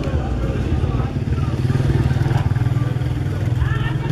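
A small engine running steadily with a fast low throb, with people's voices over it.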